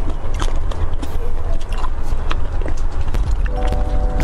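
Close-miked eating sounds: irregular sharp clicks and scrapes as a thin metal pick works marrow out of a cut beef bone, over a steady low hum. Near the end a few steady tones come in.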